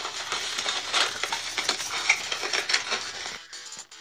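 Paper cutouts being handled and rubbed against a sketchbook page: a dense run of small rustles, crackles and taps.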